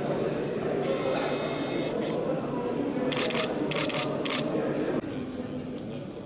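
Indistinct voices of people talking, with a quick run of sharp clicks about three seconds in; the sound drops abruptly near the end.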